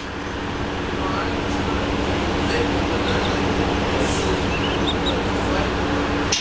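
Interior noise of a New Flyer XDE40 diesel-electric hybrid bus: a steady rumbling drone with a constant low hum running under it.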